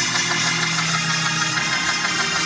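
Organ holding a steady sustained chord.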